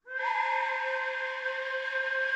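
A steady, whistle-like pitched tone starts abruptly and holds one unchanging pitch.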